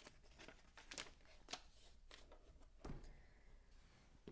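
Near silence with a few faint plastic clicks and rustles from small LEGO pieces being handled. The clearest one comes just before three seconds in.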